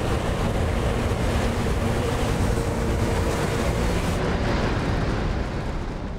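Snow avalanche rumbling: a loud, steady, deep rushing noise, with a faint held tone underneath. The hiss on top thins out about four seconds in.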